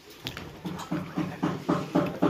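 A voice giving a quick, regular run of short repeated calls, about three or four a second, starting about half a second in and growing louder.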